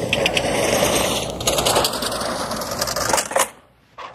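Portable pull-up projection screen retracting into its floor case, its roller mechanism running with a dense clicking rattle. It stops sharply about three and a half seconds in.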